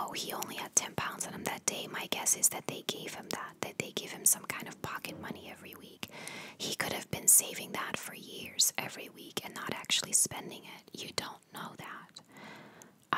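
A woman whispering close into a microphone, her words broken by many small sharp clicks and bright hissing s-sounds.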